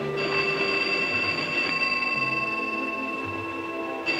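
A telephone ringing, one unbroken, steady high-pitched ring.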